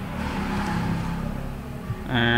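A low, rumbling background noise that swells a little and then eases off.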